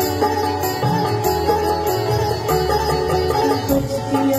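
Live band playing an instrumental interlude of a Bollywood song: a sitar-like melody over a steady bass line and a drum-kit beat, with no vocals.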